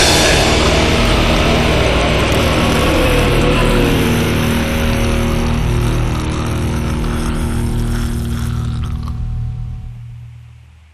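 Black metal track ending: distorted guitars hold sustained notes over a fast, churning rhythm while the whole mix slowly fades out toward the end.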